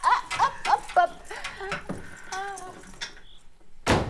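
A man's voice, laughing and calling "hop, hop", then a quieter stretch with a few faint clicks and one sharp knock just before the end.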